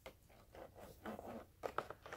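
Faint rustling and scraping of fingers handling a clear plastic blister package around a paper trimmer, with a few light clicks near the end.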